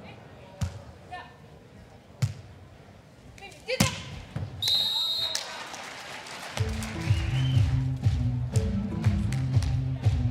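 A beach volleyball being struck three times in a rally, sharp single hits about half a second, two seconds and nearly four seconds in, the last the loudest, then a shrill referee's whistle blast lasting just under a second. From about two-thirds of the way in, music with a heavy repeating bass beat takes over.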